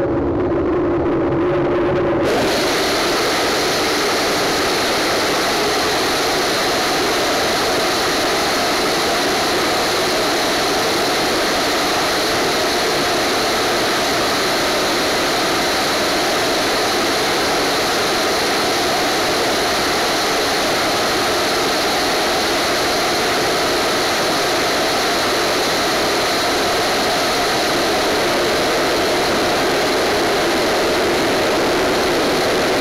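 Hybrid rocket engine, the team's DHX-400 'Nimbus', firing on a static test stand: a loud, steady rushing noise with a faint high whistle. The first couple of seconds are lower, with a few held tones, and give way abruptly to the full, even noise.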